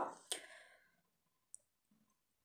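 The tail of a spoken phrase, a short click just after it, then near silence with one faint tick about one and a half seconds in. The hand-mixing of the filling is not heard.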